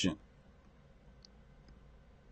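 The last syllable of a man's sentence, then near silence: room tone with a couple of faint clicks.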